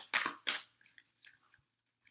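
A deck of oracle cards being shuffled by hand: three quick papery snaps in the first half-second, then a few faint ticks of the cards.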